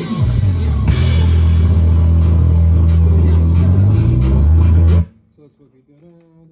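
A ddrum drum kit played along with a recorded song: cymbals and drums over a long held low bass note. The music cuts off suddenly about five seconds in, leaving only faint sounds.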